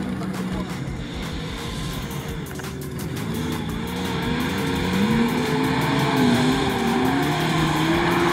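Lada Niva 4x4 engines labouring through mud and grass, their revs rising and falling, getting louder as one Niva comes close over the second half.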